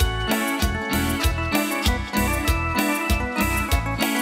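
Live cumbia band playing: a keyboard-led tune over a steady bass beat with timbales and guitar.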